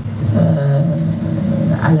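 A man's voice holding a long, level hesitation hum, like a drawn-out "mmm", then a short word near the end.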